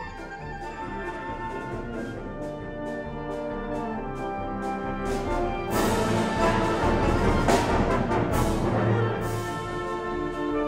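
Wind ensemble playing a march, clarinets and brass together, swelling about halfway through into a loud full-band passage with crashes, then easing a little near the end.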